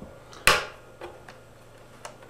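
A sharp metallic click about half a second in, then two faint ticks, as a small hex wrench is seated in a Flaxwood guitar's back plate screw and starts to loosen it.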